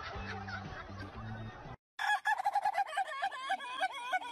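Background music with a steady bass line cuts off less than two seconds in. After a brief gap, a chicken held up by hand squawks loudly and repeatedly, several rapid calls a second.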